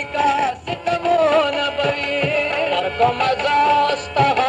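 Pashto folk music: a wavering, ornamented melody line over a few tabla-like hand-drum beats.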